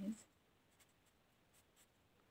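Faint scratching of a pen writing on paper, a few light strokes.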